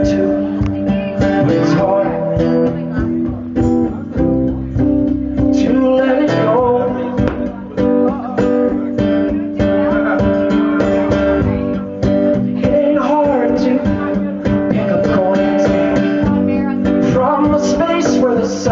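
Live acoustic folk-rock band playing a song: strummed acoustic guitar over bass guitar, with a cajon keeping a steady beat.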